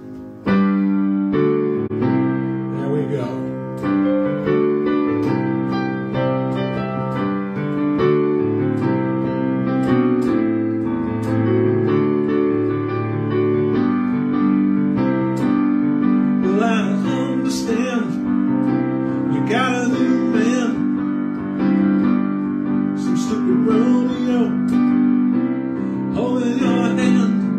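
Digital piano playing slow, sustained chords, starting about half a second in; from about two-thirds of the way through, a wavering voice comes in over it.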